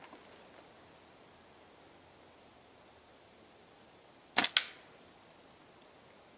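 A slingshot shot: two sharp snaps in quick succession about four and a half seconds in, with only faint hiss around them.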